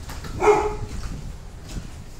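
A single short dog bark about half a second in.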